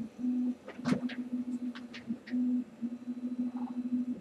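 A low steady hum that cuts out and comes back several times, with a few light clicks and knocks between about one and two seconds in, the loudest first, as a hand handles the power supplies on a plastic mounting plate.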